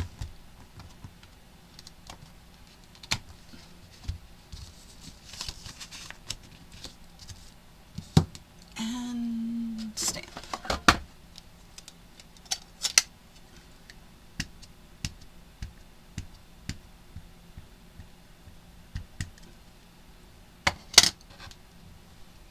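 Scattered small clicks, taps and knocks of a MISTI stamp-positioning tool and a clear acrylic stamp being handled: the hinged plastic lid closing and lifting, the stamp pressed, peeled off and set down. About nine seconds in there is a second-long rubbing sound.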